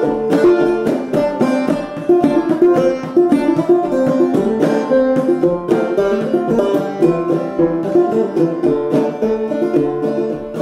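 Five-string banjo played clawhammer style, with no singing: a quick, even run of picked notes and brushed strums.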